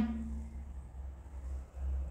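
A low, steady background hum with no distinct event: a pause in the narration over the recording's room or electrical hum.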